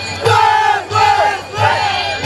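A group of voices shouting together in three short calls, in a break from the carnival music and singing.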